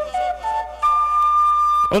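Flute playing the opening of a cumbia: a few short notes climbing in pitch, then one long high note held for about a second, cut off near the end.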